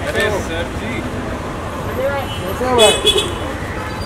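Voices calling out briefly over steady street traffic noise.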